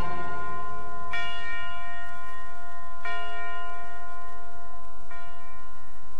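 A bell struck three times, about two seconds apart, each stroke ringing on with a rich set of overtones into the next.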